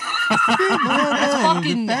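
Several men laughing and chuckling over one another, with bits of talk mixed in.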